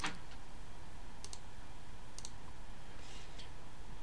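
A few soft clicks at a computer, two quick pairs about a second and two seconds in, over a steady low room hiss.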